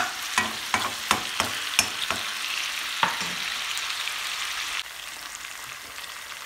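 Chicken drumsticks and sliced onion frying in oil in a pan, a steady sizzle. There is a run of sharp clicks and knocks over the first three seconds as the food is stirred with a spoon. The sizzle turns a little quieter near the end.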